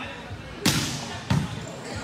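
A volleyball struck by hand twice, two sharp slaps about two-thirds of a second apart, echoing in a large indoor hall.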